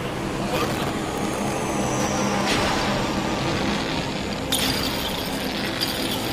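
Film sound effects for a magical attack of fireballs and lightning: a continuous rushing, rumbling noise with a low hum under it. It surges with a brighter hiss about two and a half seconds in, and again past four and a half seconds.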